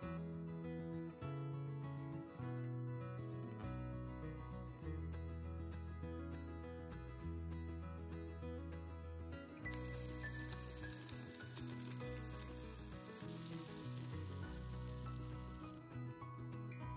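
Background music throughout. From about ten seconds in, food sizzling in a pan on a camp stove joins it as a steady hiss, which stops near the end.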